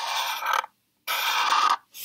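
A marker drawn back and forth on paper: two scratchy strokes of under a second each, with a third starting at the very end.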